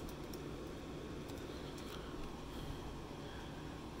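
Faint steady room hum with a few light laptop key clicks near the start.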